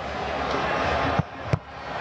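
Stadium crowd noise that drops away a little over a second in, followed by a single sharp knock as the penalty kick strikes the football.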